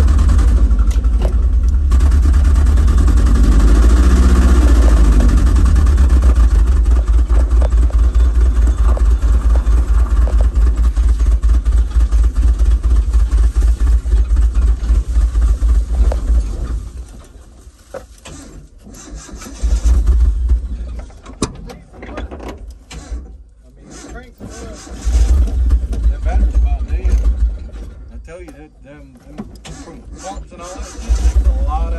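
Nissan D21 Hardbody pickup's engine heard from inside the cab, started after sitting for over a year and running for about sixteen seconds before it cuts out. Two shorter bursts of engine sound follow as it fails to stay running, in a truck that was parked after it developed a fuel issue.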